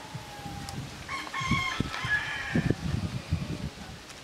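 A rooster crows once, a single call of about a second and a half, over low rustling noise.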